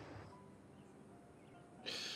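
Very quiet pause in a TV drama's soundtrack: faint background hush with a few soft sustained tones, and a short rush of noise near the end.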